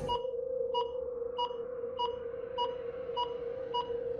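Electronic logo-sting sound design: a steady held tone with short, evenly spaced beeps on top, about one every 0.6 seconds.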